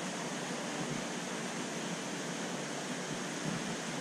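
Steady, even rushing hiss of background noise in an aquarium room, such as water circulation and air handling, with no distinct events.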